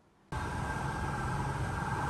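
Street ambience: a steady wash of motor traffic noise with a faint steady high tone, starting abruptly about a third of a second in after a moment of silence.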